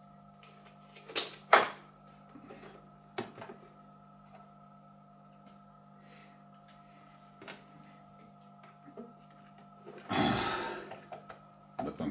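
Plastic housing and front panel of a Weller WSD 80 soldering station being handled and pressed into place: two sharp plastic clicks close together about a second in, a lighter knock a couple of seconds later, then a short scraping rustle near the end.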